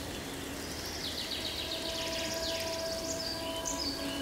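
Nature ambience sound-effect bed: a steady background noise with high, rapid chirping trills that come in about a second in and fade near the end, over a faint held tone.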